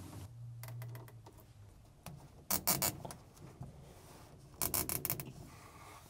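Plastic zip ties being pulled tight around a wiring harness: two short bursts of rapid ratcheting clicks, about two and a half and four and a half seconds in.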